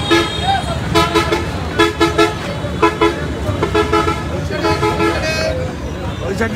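Vehicle horn honking in repeated short blasts, about six in six seconds, each a flat two-note chord, over steady street noise and voices.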